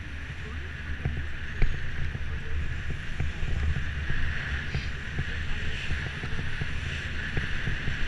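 Wind rumbling on the camera microphone of a moving bicycle, with steady tyre hiss on concrete pavement and many small rattles and clicks from the bike going over bumps and joints. One sharper knock comes about one and a half seconds in.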